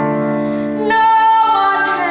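A woman singing a slow, held melody with vibrato over sustained chords on an electronic keyboard; a new, louder sung note comes in about a second in.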